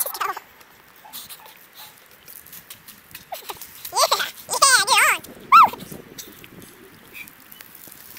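A dog howling and whining in several high calls with a wavering, sweeping pitch, about three to six seconds in, with faint scattered clicks around them.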